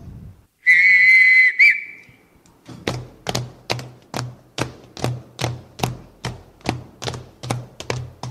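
A single whistle blast of about a second, summoning the children. Then feet marching in step on a wooden stage, about two and a half stamps a second, each a sharp tap with a low thud.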